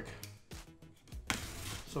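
Utility knife blade cutting through packing tape on a cardboard box: a sharp scrape a little over a second in, then a short scratchy slicing sound.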